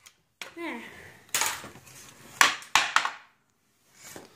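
Nails being driven into a wooden catapult frame: about four sharp, ringing knocks in the second half, the last three close together.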